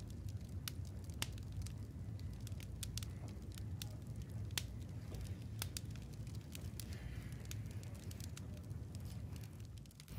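Quiet room tone: a steady low hum with scattered faint clicks and crackles.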